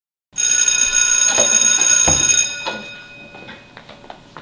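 Electric school bell ringing loudly for about two seconds, starting just after a brief silence, then dying away. A few faint taps follow.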